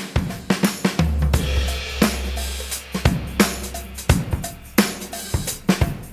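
Background music with a steady drum-kit beat, and a held low bass note from about one to three seconds in.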